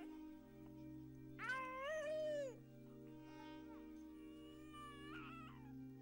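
A baby crying: one long wail about a second and a half in, then a fainter, shorter cry near the end, over steady background music.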